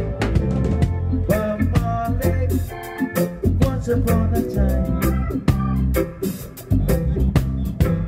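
Live reggae band playing at full level: a heavy bass line and drum kit on a steady beat, with organ chords on top.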